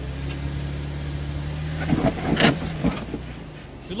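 Jeep Wrangler Rubicon engine running low and steady as it crawls over rock, with a short cluster of knocks and scrapes about two seconds in as the Jeep works against the rock ledge.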